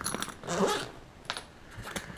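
A few light metallic clinks and clicks from the bag's metal zipper pulls as they are popped free of the TSA zipper lock and handled.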